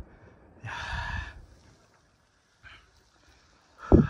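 A man's heavy, breathy exhale about a second in, winded from a steep uphill climb, then a sharp loud thump just before the end.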